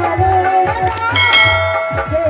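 Female singer with Bollywood-style stage music, a wavering vocal line over steady low drum beats; about a second in, a bright bell chime sounds over the music and rings on.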